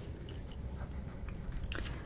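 Crackling-fire sound effect: scattered soft crackles and pops over a low steady rumble, a few sharper pops near the end.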